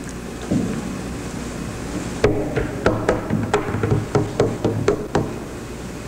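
A run of about ten sharp knocks in an uneven rhythm, starting about two seconds in and stopping shortly before the end.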